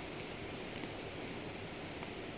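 Steady low background hiss of outdoor ambience, even throughout, with no distinct knocks or clicks.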